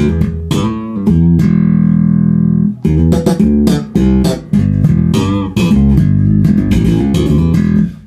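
Dingwall NG2 fanned-fret electric bass played through a Gallien-Krueger MB Fusion 800 amp and a Bear ML-112 cabinet: a short funk riff of quick, sharply struck notes, with one note left ringing for over a second about a second in.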